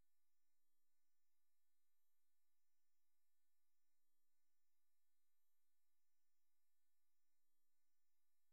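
Near silence: a pause in the narration with no audible sound.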